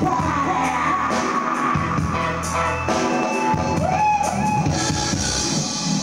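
Live dub band playing, with heavy bass dropping in and out under drums and cymbals, and a voice singing over it.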